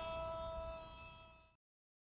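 An air-horn effect holds one long steady note that fades and then cuts off about a second and a half in.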